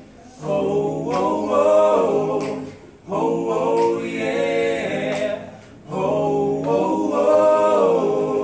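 Male a cappella group singing held chords in close harmony, in three phrases of about two and a half seconds each with short breaths between.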